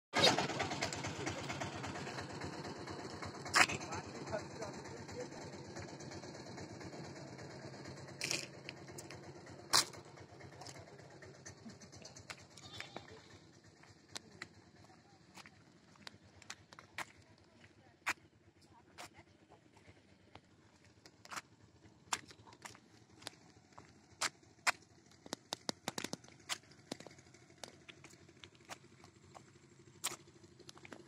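A small vehicle's engine fading away over the first several seconds. Then scattered faint clicks and taps, typical of footsteps and phone handling, over quiet outdoor background.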